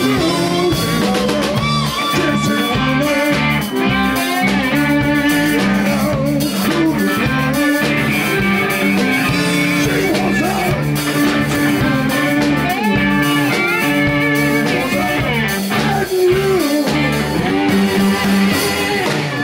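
Live blues-rock band playing: electric guitars over a bass guitar line and a drum kit, with some gliding guitar notes.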